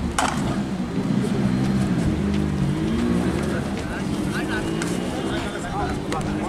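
A kabaddi raider's continuous chant, kept up without a break on one held breath. Other voices call out over it near the end.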